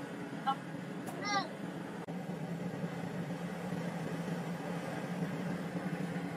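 Steady low hum of room noise, with a brief faint high-pitched voice-like sound about a second in.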